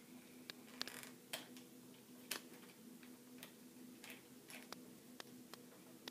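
Faint, irregular clicks and taps of a small plastic toy launcher being handled and set up on a wooden table, over a faint steady hum.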